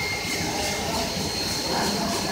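Goldfist automatic carpet washing machine running: steady mechanical noise of the conveyor and rollers moving a carpet through, with a constant high whine over it.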